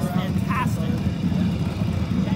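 Deep, steady rumble from a drum-throne thumper driven by Powersoft M-Force linear motors, playing the bass of a VR roller-coaster ride. A short burst of voice comes in the first moment.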